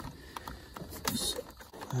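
A rubber vacuum hose being tugged and wiggled on its plastic fitting on the vacuum-operated HVAC control, making small scattered clicks and rubbing noises with a short scraping hiss about a second in. The hose is stuck tight and not yet coming off.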